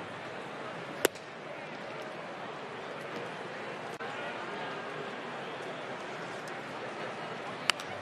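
Steady ballpark crowd murmur, with one sharp pop about a second in as a 93 mph sinker lands in the catcher's mitt. A second sharp crack comes near the end, at the next pitch.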